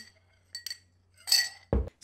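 A straw clinking against a drinking glass, a few short ringing clinks during a sip, the largest about a second and a half in. A short low thump follows just before the end.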